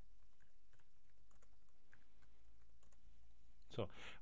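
Faint keystrokes on a computer keyboard, scattered clicks as code is typed, over a low steady hum.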